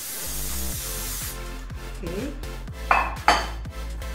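Aerosol cooking spray hissing for about a second as it coats a glass baking dish, then two sharp knocks about half a second apart near the end as the glass dish is set down on the counter.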